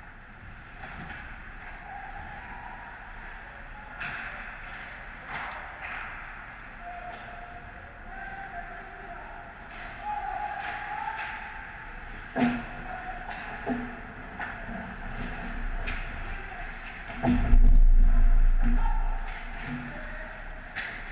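Ice hockey play heard from the goal: skates scraping and swishing on the ice, with scattered sharp clacks of sticks and puck. A hard knock comes about twelve seconds in. Another comes near the end, followed by a loud low rumble lasting a couple of seconds.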